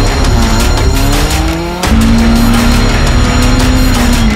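Rally car engine revving hard with tyres squealing as the car slides. The engine note rises for about two seconds, breaks off sharply just before halfway, then holds high and steady. Background music plays underneath.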